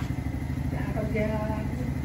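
A small motor scooter engine idling steadily with a low, even pulsing.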